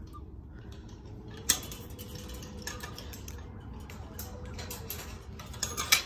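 A combination padlock on a chain-link gate being worked open: scattered small metal clicks and taps, with one sharp click about a second and a half in.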